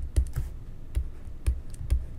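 A stylus tapping and knocking on a tablet's writing surface while handwriting, as irregular light clicks with dull thuds, a few each second.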